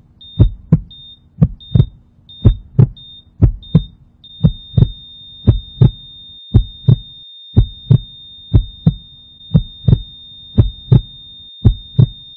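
Heartbeat sound effect: paired thumps in a steady lub-dub rhythm, about one beat a second. Over it, a high electronic beep sounds briefly several times, then holds as one long steady tone from about four seconds in.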